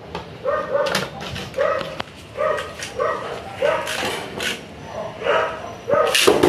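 A dog barking in short, repeated yaps, about two a second, with a few sharp plastic clicks as a Beyblade top is fitted into its launcher.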